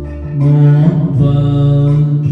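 A man singing two long held low notes into a handheld microphone over a karaoke backing track, the second note starting about a second in.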